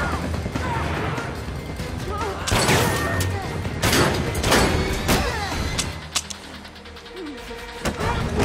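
A hand-to-hand fight: several hard punch and body-blow hits with grunts and cries of effort, over a loud action music score. The hits come roughly every second or so, with a quieter stretch near the end before another hit.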